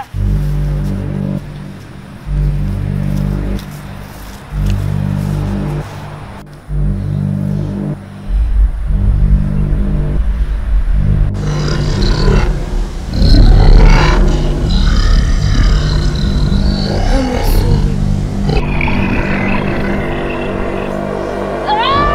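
Background film score: deep bass notes held in blocks, sparse at first and growing fuller about eight seconds in, with rising and falling sweeping tones layered over it in the second half.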